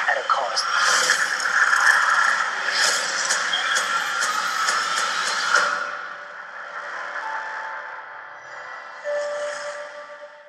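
Movie trailer soundtrack playing back: dense action sound effects with many sharp hits for the first five and a half seconds, then a drop to quieter sustained musical tones.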